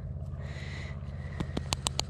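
A steady low mechanical hum with a faint wavering hiss, and a quick run of four or five small sharp clicks about one and a half seconds in as fingers handle a small corroded metal ring.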